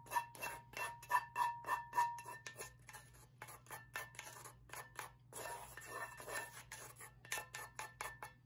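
Wooden spoon scraping a thick sauce out of a pan in quick repeated strokes, about three a second. A faint ringing tone from the pan is heard for the first couple of seconds.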